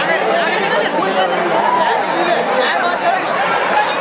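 A large crowd of many voices chattering and shouting at once, a steady din with no single voice standing out.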